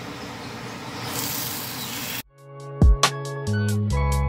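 Salmon fillets sizzling in hot oil in a cast iron skillet, the hiss growing brighter about a second in. Just after two seconds it cuts off suddenly and music with a beat starts.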